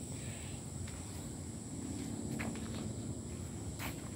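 Outdoor ambience: a steady high-pitched insect drone over low background rumble, with a couple of short clicks from the phone being moved about.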